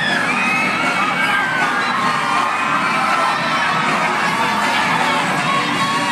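A large audience cheering and screaming, with high-pitched whoops in the first two seconds, steady and loud throughout.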